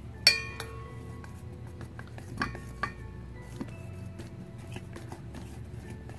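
A utensil clinking against a stainless steel mixing bowl while glue and blue food colouring are stirred together. A sharp clink about a third of a second in leaves the metal bowl ringing for about a second, then a few lighter taps follow.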